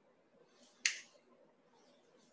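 A single sharp click from a pair of eyeglasses being handled and unfolded, just after a soft rustle of handling.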